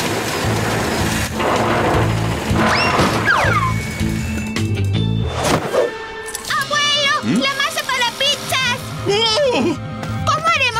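Cartoon sound effect of a truck's winch reeling in its cable to drag a van back, a steady grinding noise over background music with a beat, ending in a crash about five and a half seconds in; high wavering sounds follow.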